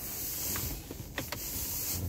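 Steady hiss inside a car's cabin, with two light clicks a little over a second in, just before the backup camera comes on: typical of the push-button gear selector being pressed into reverse.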